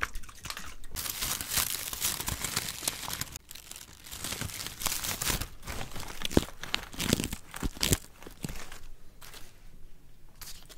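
Close-miked crinkling and rustling, like paper or tape being handled against a microphone. It comes in two stretches with a short lull between them and a few sharp crackles in the second, then dies down near the end.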